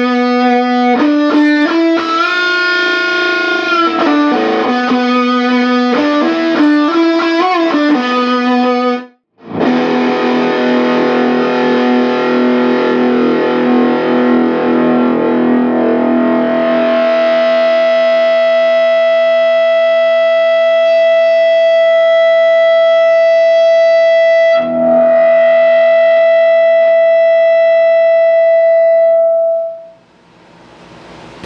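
Distorted electric guitar through a Laney Cub 8 tube amp driven by a Donner Morpher distortion pedal, played loud into a Celestion speaker: a fast hard-rock riff of changing notes for about nine seconds, a brief break, then a held chord in which one high note swells and rings steadily until it is cut off suddenly at the end.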